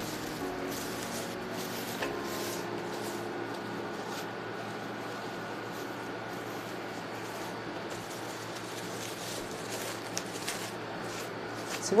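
Faint crinkling and rustling of a thin plastic freezer bag being handled and folded down over a clear acetate cake collar, over a steady background hiss.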